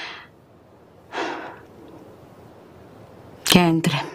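A woman sighing: a breathy exhale at the start, then a longer, heavier sigh about a second in. Near the end comes a brief voiced sound.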